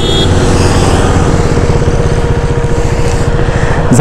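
Motorcycle engine running steadily under way, its firing pulses even, with wind rushing over the microphone.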